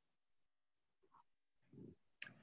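Near silence, with a faint short sound about a second in and another, low one near the end.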